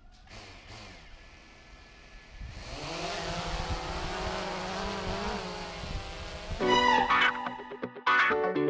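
Quadcopter drone's motors and propellers spinning up about two and a half seconds in, rising in pitch and then holding a steady buzz. Near the end, louder background music comes in over it.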